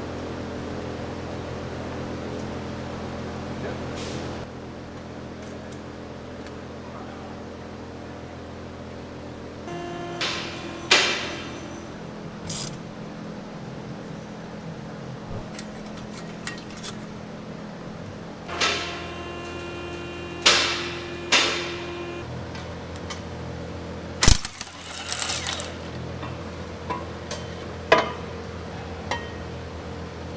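Metal hand tools clinking and clanking on engine hardware while turbocharger bolts are worked loose: a handful of sharp, briefly ringing metallic knocks over a steady hum, with the loudest knock about three-quarters of the way through.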